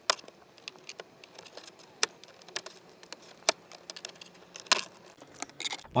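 Plastic Ford F-150 dashboard tray being pried up by hand: a few sharp clicks a second or so apart, with smaller ticks and creaks between, as its retaining clips release.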